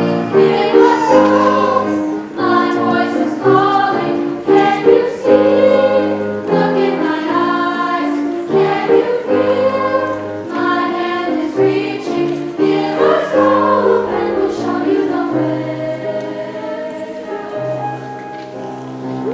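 School choir of young, mostly female voices singing with piano accompaniment, in sustained, legato phrases, growing softer near the end.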